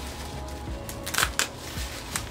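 Plastic bubble-wrap packaging crinkling as it is handled, with a few short rustles, the strongest about a second in.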